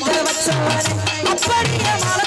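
Live Tamil themmangu folk song: a woman singing through a microphone over band accompaniment with a bass line and a steady beat of drums and shaker.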